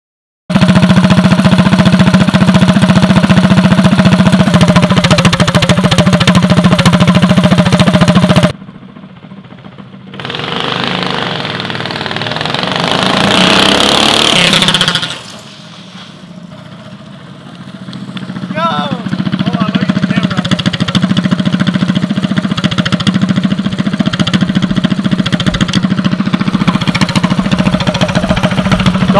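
Harbor Freight Predator 212cc single-cylinder four-stroke go-kart engine idling steadily, recorded up close. After a cut, the kart's engine revs up across a short drag run heard from farther off, then idles steadily again close by.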